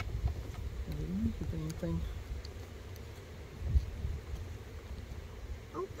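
Metal hive tool prying and scraping at a stuck honey frame in a beehive, with a sharp knock about four seconds in. Bees buzz faintly over a low wind rumble, and a voice murmurs briefly about a second in.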